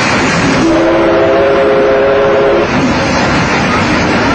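A train running with a steady rushing noise. About half a second in, it sounds a steady chord of three notes, held for about two seconds.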